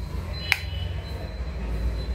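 A single sharp plastic click about half a second in, from a plastic selfie stick tripod being handled, over a steady low hum.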